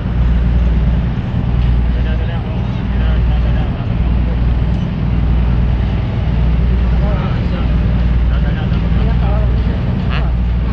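Passenger ferry's engines droning low and steady inside the cabin, the hum swelling and easing every second or so. Indistinct talking from other passengers sits underneath.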